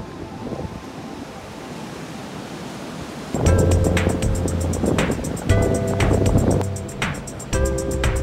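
Ocean surf and wind noise for about three seconds, then background music with a steady beat and heavy bass comes in and is the loudest sound.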